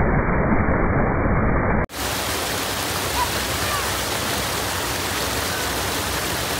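Water rushing steadily over a full lake's masonry overflow weir and churning in the channel below it. About two seconds in, the sound cuts off for an instant and returns brighter and hissier.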